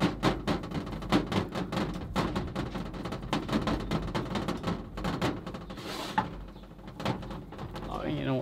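Fingertips pressing and patting a ball of sourdough pizza dough flat on a floured tabletop: many quick, irregular soft taps and thuds, easing off for a moment near the end.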